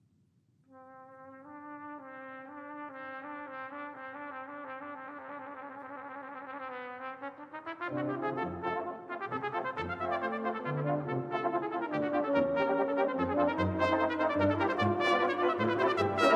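Brass band music. After a brief silence a soft, held brass line enters, and about halfway through the full band joins with low brass, growing steadily louder.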